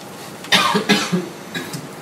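A person coughing: a short run of coughs starting about half a second in, the first two the loudest.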